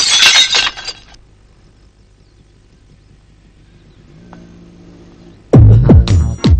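Car windshield glass shattering from a cricket bat blow, the shards clattering and dying away within about a second. A quiet lull follows, then loud electronic music with a heavy beat starts near the end.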